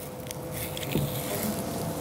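Quiet room tone in a pause between speech: a steady low hum with a few faint clicks and rustles, and a brief low sound about halfway through.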